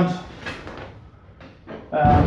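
A man's voice trails off. Then comes a quiet stretch with light rustling and two or three faint knocks from the trike frame and harness as he settles into the suspended homemade paramotor trike.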